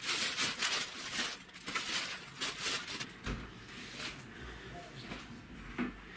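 Clear plastic bag crinkling and rustling as a heavy machine is pulled out of it, with a low thump about three seconds in as it is set down on the desk, then quieter handling.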